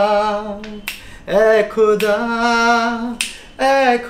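A man singing unaccompanied, holding long notes with vibrato in short phrases, with a few sharp clicks between the phrases.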